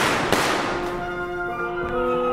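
Opera orchestra playing two loud accented crashes with long ringing decays near the start, then holding a sustained chord.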